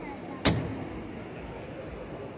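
A single sharp thump about half a second in, over a steady murmur of voices in a large hall.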